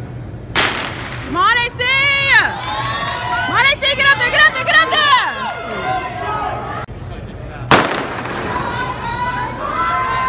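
Starter's pistol shot about a second in, ringing in an indoor arena, then spectators yelling long rising-and-falling shouts of encouragement as the sprinters run. A second starting shot comes after a short break in the sound, followed by more shouting.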